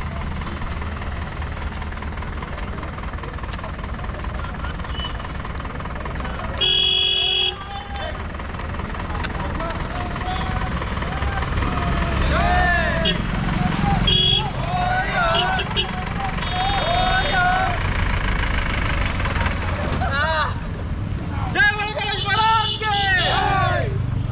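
Vehicle horn honking once for about a second, then a shorter toot around halfway, over the steady rumble of a moving vehicle's engine and road noise. In the second half, people's voices shout, loudest near the end.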